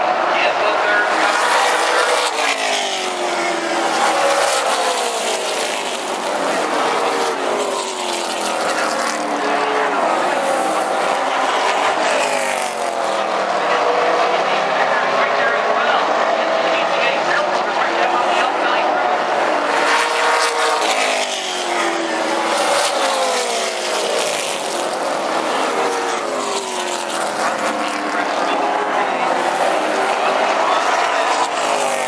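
A field of late model stock car V8 engines racing on an oval track, loud throughout. The engine notes swell and sweep up and down in pitch over and over as the pack comes around and passes.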